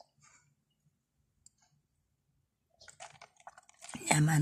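Near silence, with a few faint clicks and ticks in the last second.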